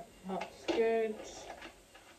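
A person's voice: a brief burst of speech or vocal sounds about half a second in, then quiet room tone.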